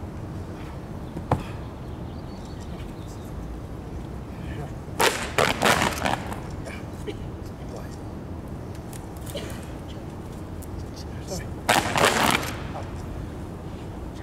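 Kung fu fans snapped open by a group of performers: a cluster of sharp, loud cracks about five seconds in and another about twelve seconds in, with a lone smaller snap about a second in.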